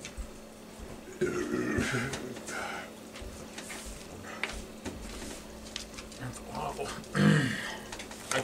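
A person belching, one loud belch about seven seconds in, during a competitive eating session; a short stretch of murmured voice comes earlier.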